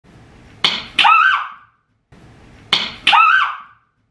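A sharp crack or knock, then a second hit and a short high-pitched cry that rises and falls. The same moment plays twice, identically, with a silent gap between.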